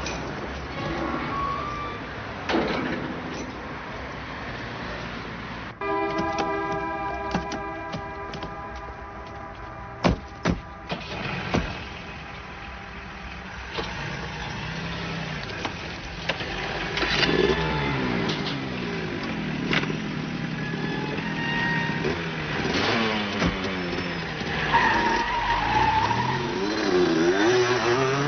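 Car engine running, rising and falling in pitch as it revs in the second half, with a sustained horn-like blast of several steady tones about six seconds in and a few sharp knocks around ten seconds in.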